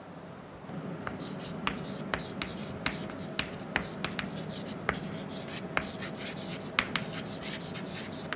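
Chalk writing on a chalkboard: a run of sharp taps and short scratches as letters are written, starting about a second in.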